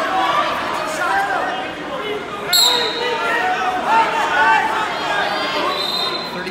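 Many voices in a gymnasium: spectators and coaches talking and calling out. About two and a half seconds in, a referee's whistle gives a short, sharp blast as the wrestlers restart.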